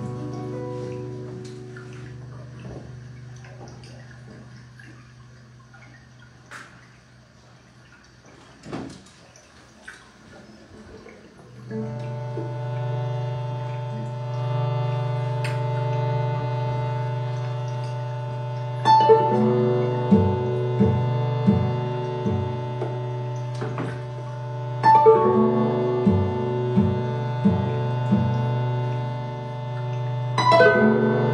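Ambient guitar music: a held chord fades away over the first ten seconds amid faint clicks and drips. About twelve seconds in, a sustained guitar drone swells up, with fresh chords struck twice later on and a low pulsing note beneath.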